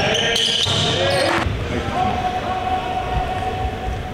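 A basketball bouncing on a hardwood gym court, with voices on and around the court. A single steady tone holds through the second half.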